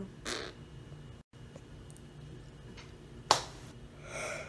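Quiet room tone with a soft breath just after the start, a brief dropout to dead silence, and a single sharp click about three seconds in.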